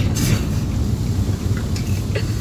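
Steady low rumble inside a car's cabin, road and engine noise mixed with wind buffeting the microphone, with a short hiss just after the start.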